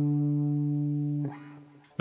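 Electric guitar ringing on a single held low D, fretted with the little finger at the tenth fret of the low E string, the top note of a three-notes-per-string pentatonic group. The note sustains steadily, then is damped about a second and a quarter in.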